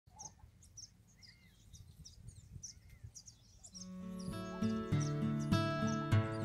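Birds chirping in short, scattered calls over a faint low ambient hum; about two-thirds of the way in, upbeat background music comes in and grows louder.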